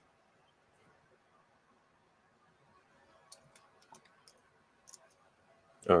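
A handful of faint, short clicks from the computer desk, spaced irregularly through the second half, over a quiet room. A man's voice starts 'all right' at the very end.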